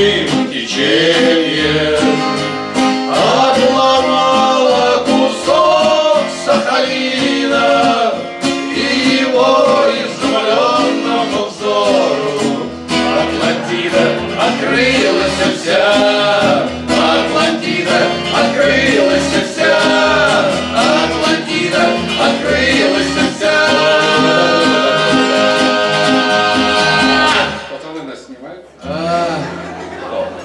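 Two acoustic guitars, one steel-string and one nylon-string, played together while several men's voices sing along. The music drops away briefly near the end, then resumes.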